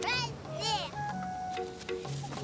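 A young girl gives two short, high-pitched laughing squeals, the second rising and then falling in pitch, over light children's background music.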